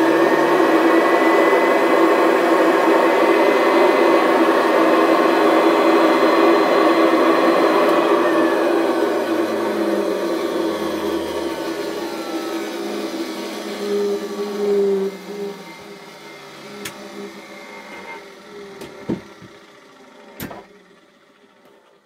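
Summit upright vacuum cleaner's motor running at full speed with a steady whine. About eight seconds in, it winds down, its pitch falling and fading over several seconds. A few sharp clicks come near the end.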